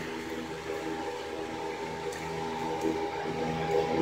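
Steady background hum with a faint steady tone above it: room noise between narration.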